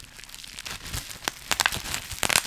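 Plastic bubble wrap crinkling and crackling in the hands as a small item is unwrapped, with irregular sharp clicks.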